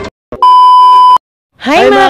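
A single loud electronic beep: one steady high tone held for just under a second, stopping abruptly. A woman's voice starts near the end.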